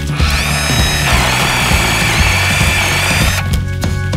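A small handheld electric chainsaw whines up to speed, then drops in pitch and turns rougher as it bites into thin sapling stems, and stops about three and a half seconds in. Background music plays underneath throughout.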